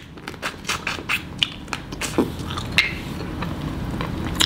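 Close-up eating sounds: wet mouth clicks and smacks, several a second, while chewing snow crab and noodles.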